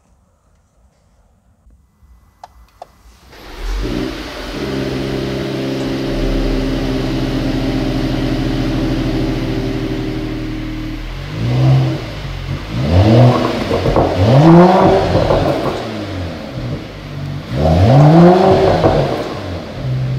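Mercedes-AMG GT 43's 3.0-litre inline-six started in Sport Plus mode, catching about three and a half seconds in and settling to a steady idle. In the second half it is revved in several short throttle blips, each rising and falling in pitch.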